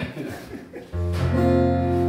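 A short laugh, then about a second in a chord strummed once on an acoustic guitar in DADGAD tuning, left ringing steadily with its low open bass string sounding.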